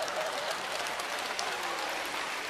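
Theatre audience laughing and applauding, a steady wash of crowd noise after a punchline.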